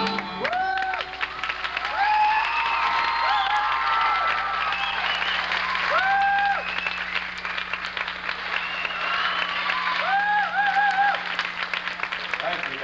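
Audience applauding, with several short, high held whistles or calls sounding over the clapping.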